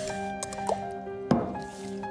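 Soft background music with held tones, under a man gulping water from a glass. One sharp knock a little over a second in.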